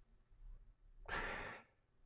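A man's single short breath, soft and unvoiced, about a second in, in a pause between phrases; otherwise near silence.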